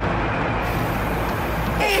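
Aerosol spray paint can spraying in one long, steady hiss that starts abruptly.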